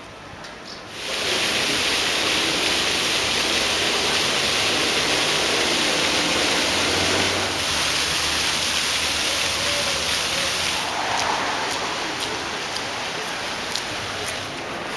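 Water from a fountain's many jets splashing into its basin: a steady rushing that starts suddenly about a second in and drops away near the end, leaving a quieter hiss with a few clicks.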